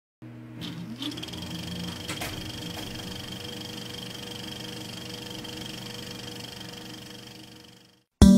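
Film projector sound effect: a steady motor whirr with a fine rapid clatter, rising in pitch as it spins up about half a second in, with a few clicks early on, fading out just before the end.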